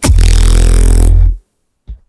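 A beatboxer's mouth into a cupped handheld microphone, holding one loud, buzzing bass note for about a second and a half before it cuts off. A short low thump follows near the end.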